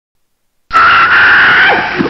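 A loud, high scream-like cry that starts suddenly about two-thirds of a second in, holds one pitch for about a second, then breaks into falling slides.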